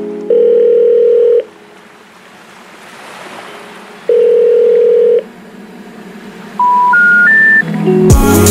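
Telephone tones in the background music: a steady ringback-like tone sounds twice, about a second each with a gap of under three seconds, then three short beeps step up in pitch near the end, like the telephone special information tone before a 'number not in service' message.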